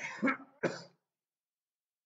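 A person coughing and clearing the throat: two short coughs close together in the first second.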